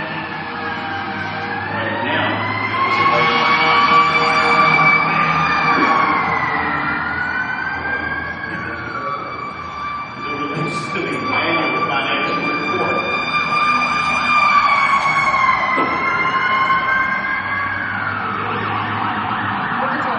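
Emergency-vehicle sirens wailing, their pitch rising and falling slowly over several seconds, with two sirens overlapping at times.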